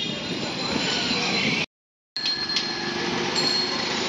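Busy street noise among cycle rickshaws: a steady rumble and rattle of traffic and wheels, with a faint thin squeal over it. The sound drops to dead silence for about half a second near the middle, then resumes.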